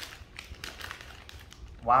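Plastic Haribo gummy bear bag crinkling in quick, irregular crackles as it is pulled open by hand.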